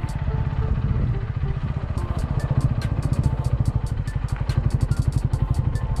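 Honda CB125R's 125 cc single-cylinder four-stroke engine running as the bike is ridden, a steady rapid pulse that grows stronger about two seconds in.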